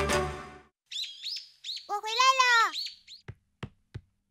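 Birds chirping as a cartoon scene-setting sound effect: a few short high chirps, then a longer warbling call that rises and falls. Three faint soft knocks follow near the end.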